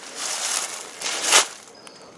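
Two footsteps crunching through dry fallen leaves, each a rough rustle lasting under a second.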